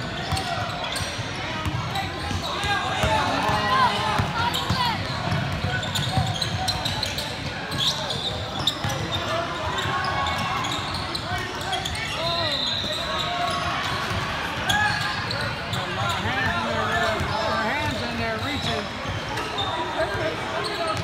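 Basketball game sounds in a large gym: a ball bouncing on the hardwood court amid indistinct shouts and chatter from players and spectators, echoing in the hall.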